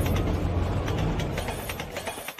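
Closing soundtrack of a music video: a low rumble with scattered, irregular clicks and rattles, fading out near the end.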